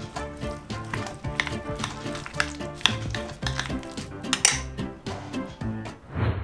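Metal spoon stirring a crumbly cottage cheese and herb mixture in a glass bowl, scraping and clinking against the glass, over background music with a steady beat.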